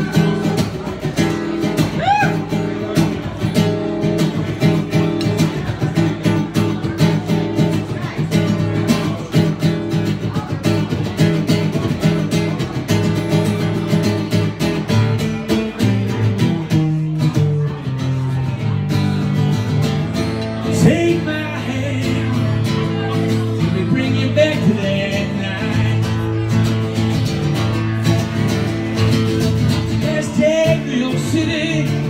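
Acoustic guitar strummed steadily in a live performance, the opening of an original song.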